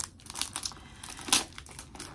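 Crinkling of a perfume box's packaging as it is handled, a series of sharp crackles, the loudest about a second and a half in.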